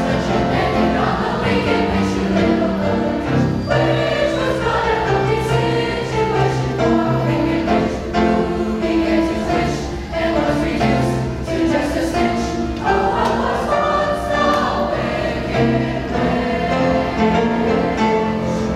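A seventh-grade mixed choir of girls and boys singing together, sustained notes moving through a melody without a break.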